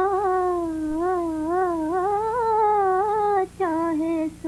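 A woman humming a wordless melody with no accompaniment. She holds one long note, then lets it waver slowly up and down, with a short break about three and a half seconds in.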